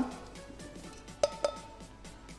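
Stainless steel mixing bowls clinking twice in quick succession, about a second and a quarter in, as dry flour mix is tipped from one bowl into the other. Each knock leaves a short metallic ring.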